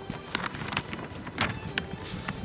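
Hall ambience of a large seated audience under faint music with a held steady tone, broken by a few short sharp clicks and knocks.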